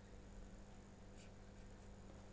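Near silence under a steady low mains hum, with two faint ticks from a stylus drawing on a pen tablet, about a second in and near the end.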